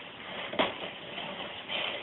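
A plastic baby push-walker toy shifting on a wooden floor, with one short, sharp knock about half a second in.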